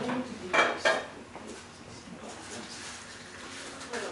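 Kitchen clatter of dishes and cooking utensils, with two loud, sharp clinks about half a second and a second in, then quieter handling.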